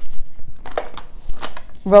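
A few light knocks and taps from craft tools and a folded paper strip being handled and set down on a paper trimmer.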